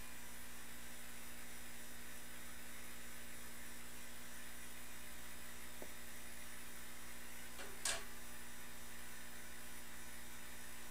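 Steady electrical hum with a faint hiss, and one short rustle or tap a little before the end.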